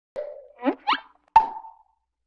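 Cartoon-style motion-graphics sound effects: a short pop, two quick rising bloops, then a sharper water-drop plop that rings briefly and fades.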